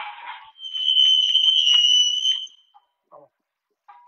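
A loud, shrill, high-pitched tone held steady for about two seconds, then cut off, after a brief snatch of music at the start.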